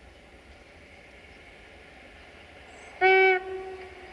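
Diesel railcar of the VT614 type sounding its horn in one short, single-tone blast about three seconds in, loud against the faint, slowly growing noise of the railcar approaching.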